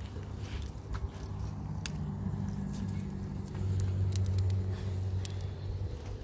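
Low, steady engine-like hum that swells about three and a half seconds in, with scattered sharp crackles and pops from a wood fire.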